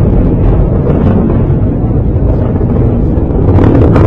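PSLV rocket motors heard from the ground as the launcher climbs away: a loud, steady, deep rumble that turns harsher and crackly near the end.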